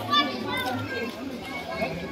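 Crowd of people chattering at once, many overlapping voices with no single speaker, and one voice briefly louder right at the start.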